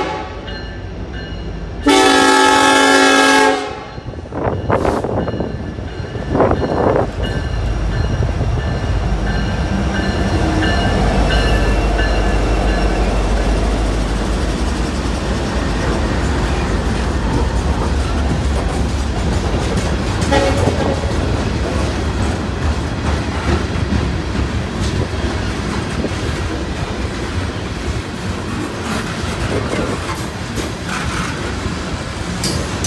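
Diesel locomotive air horn blowing one long chord about two seconds in, then two shorter notes. A train then rumbles past with a deep, steady engine drone and wheels clicking over the rail joints, loudest a few seconds after the horn.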